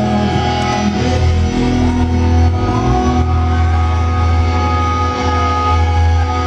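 A rock band playing loudly live, heard muffled through the fabric of a purse. A single note is held steady from about halfway through.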